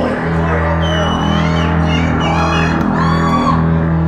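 Live hip-hop set played loud through a venue PA, with a steady heavy bass. High gliding tones cut through about a second in and again near three seconds.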